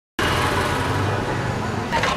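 Street ambience: steady road-traffic noise with people talking in the background, cutting in abruptly a moment after the start.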